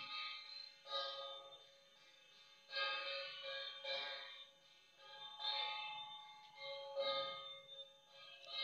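Temple bell ringing, struck again about every one and a half seconds, each strike ringing on under the next.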